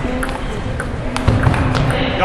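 Table-tennis rally: the celluloid ball clicks sharply off the rubber paddles and the table several times, the strokes a fraction of a second to about half a second apart.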